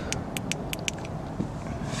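A quick run of about six light, sharp clicks in the first second, over a steady low hum.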